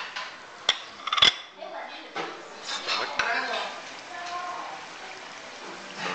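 Plates and bowls clinking on a restaurant table as dishes are moved, with a few sharp clinks around a second in, over background table chatter.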